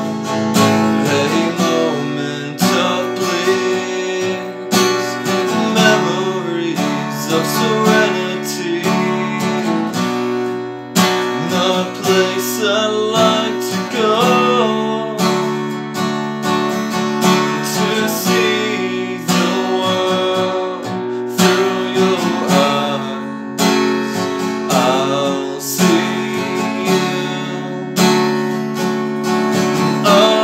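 Steel-string acoustic guitar strummed in chords, each stroke followed by ringing strings, at a slow, even pace.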